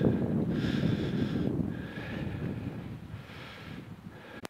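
Wind buffeting the microphone outdoors: a low, noisy rumble that fades gradually.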